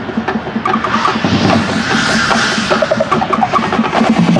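High school marching band playing its field show, in a percussion-driven passage: drums keep a steady rhythm of strikes, with runs of short pitched mallet notes over them.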